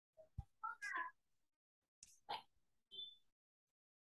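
Faint, mostly quiet stretch with a short high-pitched call that bends upward about a second in. A few soft clicks and knocks and a brief high beep come near the end.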